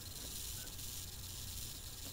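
Faint steady hiss with a low hum underneath: the background noise of the recording, with no distinct events.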